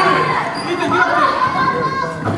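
Many children's voices shouting and chattering at once, indistinct and overlapping, echoing in a large hall.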